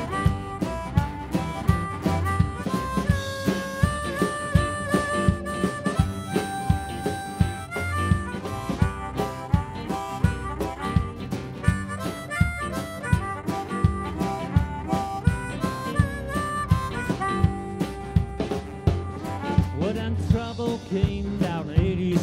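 Harmonica solo played into a handheld microphone, with held and bent notes, over a live blues-rock band. Electric and acoustic guitars, upright bass and drums keep a steady beat of about two hits a second.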